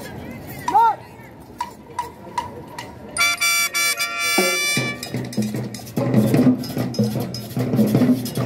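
Marching band starting to play: sharp clicks keep time, a long high held note comes in about three seconds in, then low brass and drums enter with a steady beat from about the middle on.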